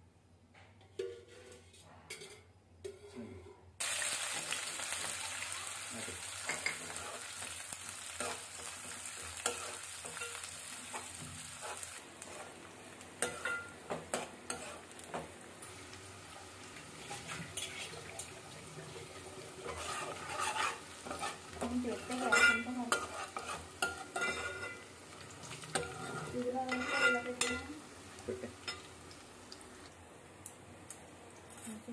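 Sliced onions and garlic sizzling in hot oil in a metal pan; the sizzle starts suddenly about four seconds in and softens about halfway. A steel spoon then stirs them, scraping and clinking against the pan, most strongly near the end.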